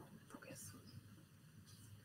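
Near silence: faint room tone with a few soft, brief sounds in the first second.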